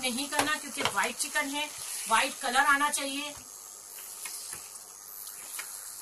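Chicken and onion-cashew paste sizzling in oil in a kadai while being stirred with a plastic spatula: a steady high hiss with a few soft knocks of the spatula. A woman's voice is over it for the first half.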